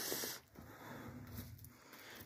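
A short breathy hiss close to the phone's microphone, like a person exhaling, that cuts off about half a second in; then only faint rustling.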